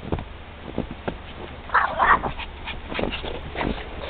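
Small long-haired dog giving two short, high-pitched whines about two seconds in, among soft knocks and thumps.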